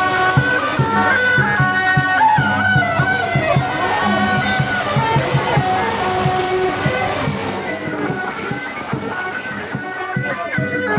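Traditional Taiwanese temple procession band: suona reed horns playing a melody over fast, regular gong and hand-cymbal strokes. The percussion thins out after about halfway, leaving mostly the horns.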